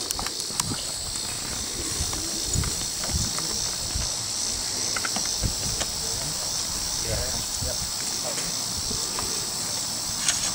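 Civil War reenactors loading muzzle-loading rifles: scattered faint clicks and knocks of ramrods and handling. A steady high-pitched drone of summer insects runs underneath.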